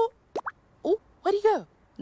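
A woman's short wordless vocal sounds: quick rising 'hm?'-like noises, then a longer falling hum past the middle.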